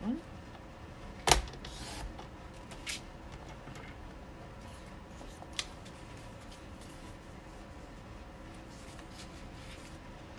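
Paper trimmer cutting a strip of patterned paper, with the paper being handled: one sharp click about a second in, the loudest sound, then a few lighter clicks and taps.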